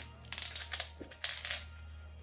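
Small hard pellets clicking and rattling on a laminate floor as they are handled, in a few quick clusters during the first second and a half, over a low steady hum.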